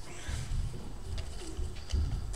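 Low thumps and shuffling of people moving about a room, with faint short indistinct voice-like sounds, and a crisp rustle of paper near the end as a sheet is picked up.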